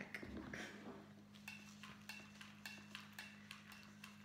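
Faint scattered clicks and taps from hands working an artificial-flower wreath with a hot glue gun, over a low steady hum.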